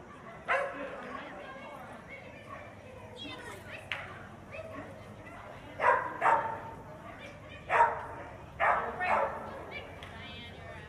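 A dog barking in short, sharp barks: one about half a second in, then a quick run of about five barks from around six seconds.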